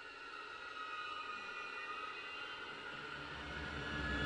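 Quiet passage of a dark orchestral track played on Symphobia sampled strings: several high sustained string tones held with almost no low end, slowly growing louder toward the end.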